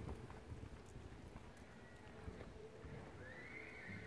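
Faint, distant hoof falls of a horse moving on arena sand, then a horse whinnying in one arching call near the end.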